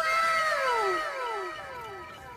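A comedy sound effect: a long downward-sliding tone repeated in overlapping echoes, fading away over two seconds.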